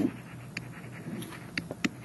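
Stylus writing on a tablet: a few faint, sharp ticks as the pen taps and strokes the surface, over a low steady background hum.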